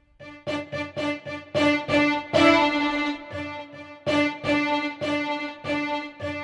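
Sampled solo violin from the VSCO 2 Community Edition, arco vibrato articulation, playing the same note over and over, about two notes a second, with one longer, louder note near the middle. The repeated notes test whether loud and soft notes trigger different samples; the regular arco vibrato patch is thought to probably reuse the same samples as the piano and forte patches.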